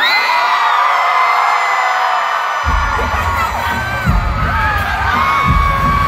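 A large arena crowd screaming and cheering, many high voices together. About two and a half seconds in, heavy bass music comes in from the arena sound system under the screams, with deep hits near the four- and five-and-a-half-second marks.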